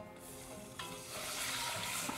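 Chicken stock poured from a glass measuring cup into a hot butter-and-flour roux in a copper saucepan, the liquid running in and sizzling, louder from about a second in.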